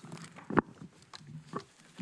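A single sharp knock or thump about half a second in, then a brief low vocal sound, like a murmur or grunt, near the end.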